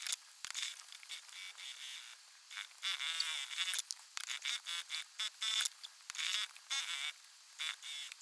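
Sewing machine stitching through layers of fabric in a series of short runs, starting and stopping every second or so.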